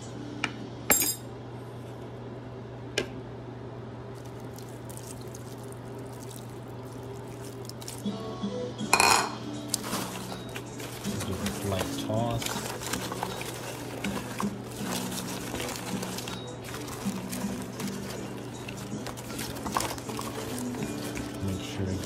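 Clinks and knocks of a metal utensil and hands against a glass mixing bowl as fried fish pieces are tossed in sauce, with one louder knock about nine seconds in and denser clatter in the second half.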